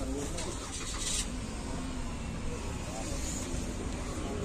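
Faint distant voices over a steady low rumble, with a brief hiss about a second in.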